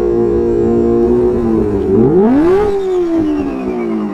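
Kawasaki Ninja H2's supercharged inline-four engine running at steady revs, then revved sharply about two seconds in, the pitch climbing fast and then sinking slowly back as the throttle closes.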